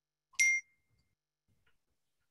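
A single short ding about half a second in: a bright strike with a ringing tone that fades out within about half a second.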